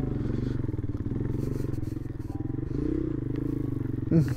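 Vento Screamer 250 motorcycle's liquid-cooled 250 cc engine running at low, steady revs while ridden off-road, its note rising briefly about three seconds in.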